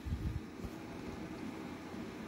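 Faint steady hiss of room tone with no distinct source, and a few soft low bumps in the first half second.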